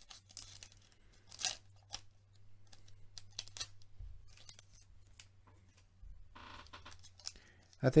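Foil wrapper of an Upper Deck hockey card pack being torn open and handled, with scattered short crackles and a longer rustle near the end. A faint low hum sits underneath.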